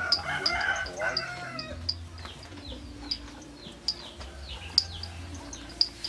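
A rooster crows once in the first second and a half, over small birds chirping with short, high, repeated calls.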